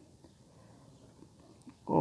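Near silence: faint room tone in a pause of the speech, with a man's voice resuming at the very end.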